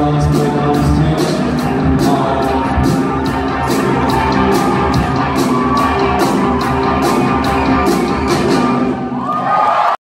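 Rock band playing live: electric guitars and bass over a drum kit, the cymbals struck at an even pace. Near the end the drums drop out and a sliding guitar note is heard.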